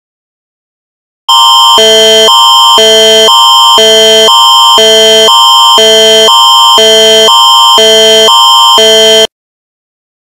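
Electronic two-tone alarm of a mock Emergency Alert System broadcast, very loud, switching between two tones about twice a second. It begins about a second in and cuts off suddenly near the end.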